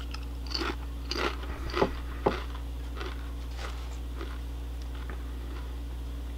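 Close-up crunching and chewing of a potato chip in the mouth: several sharp crunches in the first two seconds or so, then fainter chewing. A steady low hum runs underneath.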